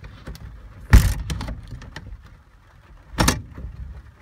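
Truck cap side access door being shut: a heavy thump about a second in, some light rattling, then a second sharp knock about two seconds later.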